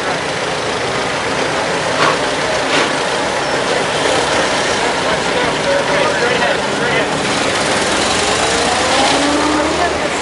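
Antique cars' engines running as the cars drive slowly past one after another, with a rising engine note near the end. Voices of onlookers chat in the background.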